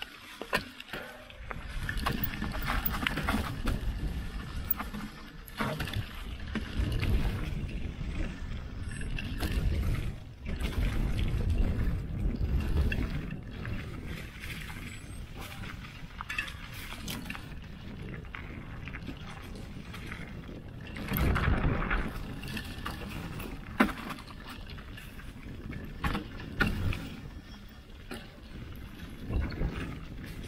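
Mountain bike ride down a dirt trail, heard from a camera mounted on the bike: tyres rolling over dirt and leaves, with clicks and rattles from the bike over bumps. A low rumble swells several times, loudest about a third of the way in and again around two thirds through.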